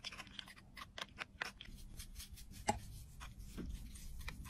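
Metal spatula scraping and prising crumbled pressed powder out of a compact's metal pan, making irregular small clicks and scrapes, several a second, as the chunks break loose and drop into a glass dish. The sharpest click comes about two-thirds of the way through.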